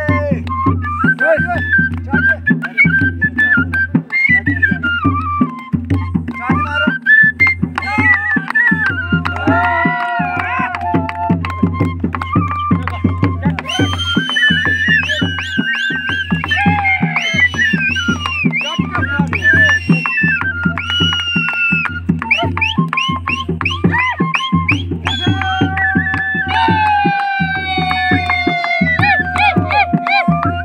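Live folk music: a dholki barrel drum keeps a steady, even beat under a flute playing a sliding melody.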